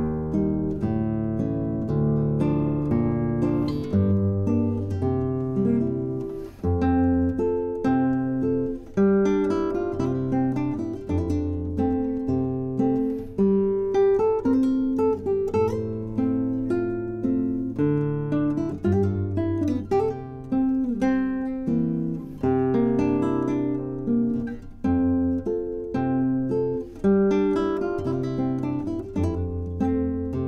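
Yamaha GC71 nylon-string classical guitar with Brazilian rosewood back and sides played solo and fingerpicked: a melody moving over ringing bass notes, with chords struck now and then and notes left to decay.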